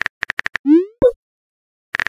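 Smartphone messaging-app sound effects. Rapid keyboard typing clicks for about half a second, then a short rising tone and a pop as the message is sent. Typing clicks start again near the end.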